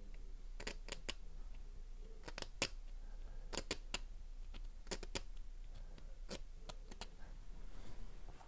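Small needle file scraping in short strokes, in quick clusters of two or three strokes about once a second.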